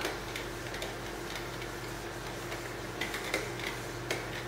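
Handheld whiteboard eraser rubbing marker off a whiteboard in short strokes, heard as faint scattered ticks and scrapes, more of them near the end, over a steady low hum.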